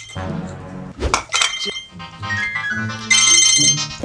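Background music, then a mobile phone ringtone that comes in loud and high about three seconds in and lasts under a second.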